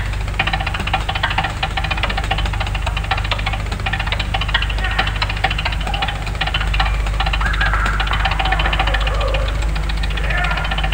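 Jazz drum kit played with sticks in a fast, unbroken stream of strokes on snare and cymbals. The recording is worn tape with a steady low hum underneath.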